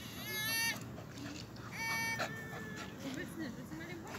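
A dog giving two short, high-pitched whines about a second and a half apart.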